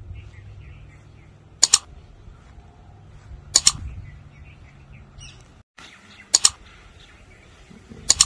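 A songbird giving short, sharp double chirps, three times about two seconds apart, over a faint low steady hum.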